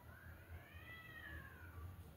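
A cat meowing once: one long, faint call that rises in pitch and then falls.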